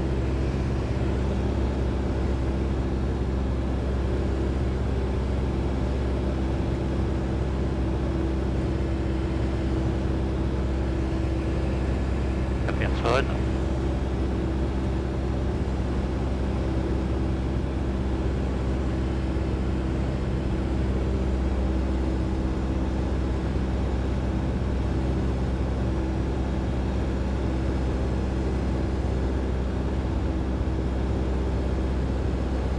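Robin DR400 light aircraft's piston engine and propeller droning steadily in cruise, heard inside the cabin. A single brief rising chirp cuts through about halfway through.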